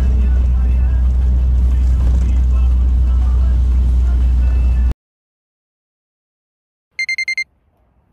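Steady loud rumble of a bus's engine and road noise heard from inside the cabin, cut off abruptly about five seconds in. After two seconds of silence comes a quick run of about five high electronic beeps.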